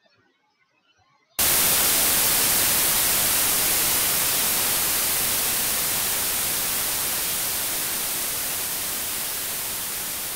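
Synthesized white noise from a single long TripleOscillator note in LMMS. It starts abruptly about a second and a half in, after near silence, and fades slowly and evenly as it decays.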